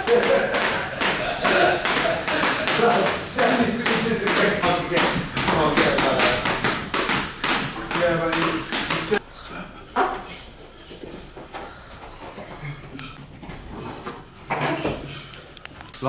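Skipping rope slapping the gym floor with the jumper's feet landing, a quick steady rhythm of taps several times a second, with voices mixed in. The tapping stops suddenly about nine seconds in, leaving quieter room sound with a few scattered knocks.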